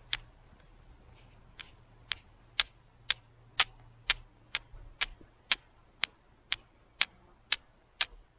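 A carbon-steel fire striker knocking against a hand-held flint in light, evenly spaced clicks, about two a second, fainter for the first second or two. The steel is being tapped against the stone rather than scraped down it, so it is not throwing sparks onto the char cloth.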